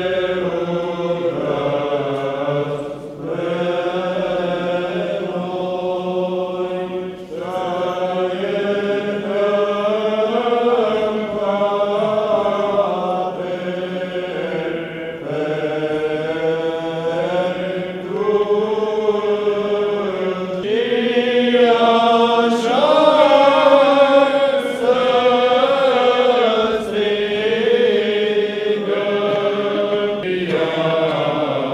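Eastern Orthodox liturgical chant: voices singing long held notes that move slowly in pitch, in phrases with brief pauses between them. The singing grows louder in the second half.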